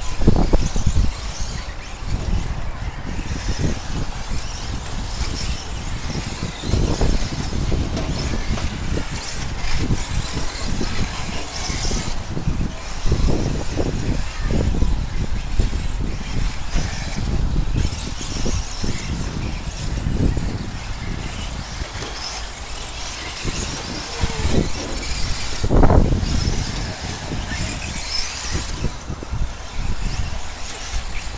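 Radio-controlled 4x4 short course racing trucks running on a dirt track, their motors and tyres giving a continuous noise that rises and falls as the trucks pass.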